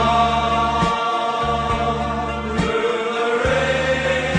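Music: voices holding long, sustained choral notes over a low, pulsing bass beat.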